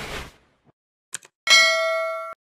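Subscribe-button end-screen sound effects: a whoosh fading out, two quick clicks a little past a second in, then a bright notification-bell ding that rings on and slowly dies away.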